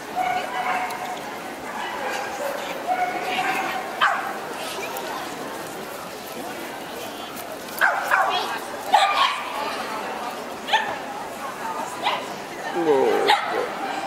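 Dogs barking and yipping: a string of short sharp barks, most of them in the second half, over the murmur of a crowd in a large echoing hall.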